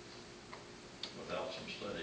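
Faint, indistinct speech in a meeting room, with two sharp clicks about half a second and a second in.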